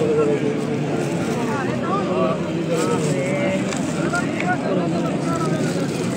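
A large crowd of men's voices, many people talking and calling at once in a steady, dense hubbub.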